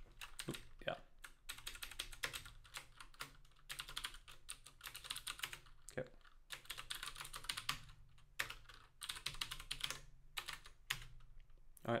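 Computer keyboard typing, fast runs of key clicks broken by short pauses.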